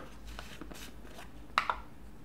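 Quiet handling of a baking powder container as its lid is opened and a measuring spoon goes in, with a few soft clicks and one short, louder rustle about one and a half seconds in.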